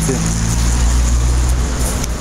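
A motor vehicle's engine running close by, a steady low hum under street traffic noise.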